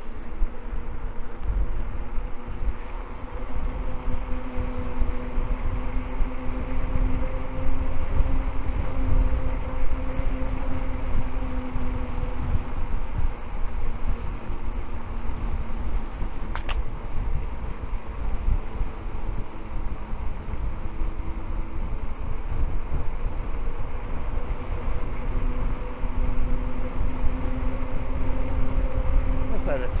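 Wind buffeting the microphone of a handlebar camera on a bicycle riding downhill at speed, with a steady low hum from the moving bike that wavers slightly in pitch and fades in and out. A single sharp click about 17 seconds in.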